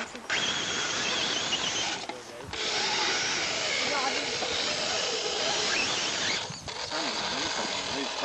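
Electric motor and gear drivetrain of a radio-controlled rock crawler running as it climbs over boulders. The sound stops briefly twice, about two seconds in and again past the middle.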